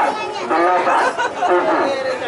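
Several people talking at once near the microphone: lively overlapping chatter.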